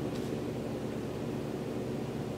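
Steady background hiss of room tone, with no distinct thumps or footfalls from the floor movement.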